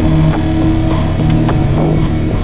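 Rock music with guitar and a steady beat.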